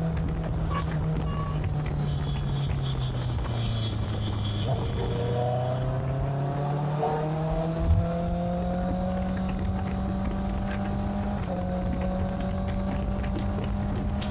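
Sport motorcycle engine running at highway speed over wind noise: the revs fall for the first few seconds, then climb steadily as the bike accelerates, with a shift about three-quarters of the way through. A short thump about eight seconds in.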